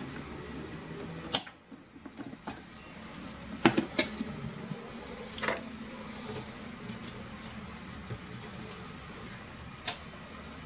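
A few sharp clicks and knocks from handling desktop computer parts, over a faint steady hum.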